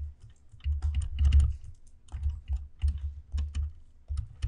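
Stylus writing on a tablet screen: a run of irregular small clicks and taps, each with a low knock, as a word is written out by hand.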